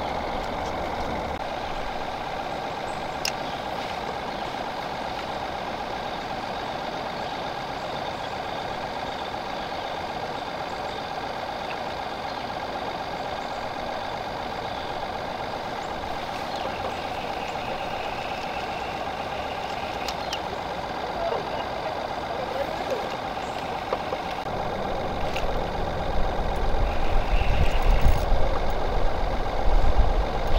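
Bow-mounted electric trolling motor running steadily with a constant whine, with a few small clicks. A low rumble builds over the last few seconds.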